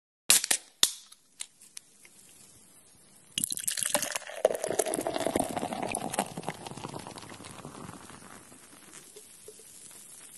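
A few sharp clicks and pops, then from about three and a half seconds beer pouring into a glass, loud at first and slowly fading.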